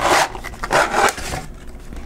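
Cardboard inner box sliding out of its outer sleeve: a short scrape, then a longer one.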